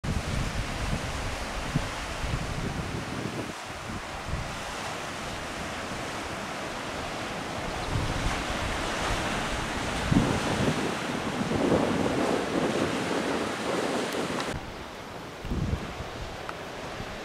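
Ocean surf washing onto a rocky beach below, mixed with wind gusting on the microphone; the surf swells louder around the middle and then drops away shortly before the end.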